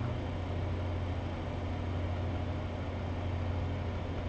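Steady low hum with an even hiss underneath, unchanging throughout: background room noise.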